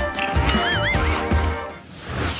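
A comic horse whinny sound effect with clip-clopping hooves over background music, as a gag on eating an apple. The whinny is a wavering high call about half a second in, over a short run of hoof thuds.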